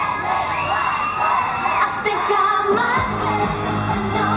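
Pop song over a stage PA system with a woman's singing voice; a long held high note in the first half, then the bass and beat come in about three seconds in.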